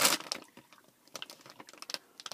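Plastic candy wrapper crinkling in a hand: a burst of rustling at first, then scattered light crackles.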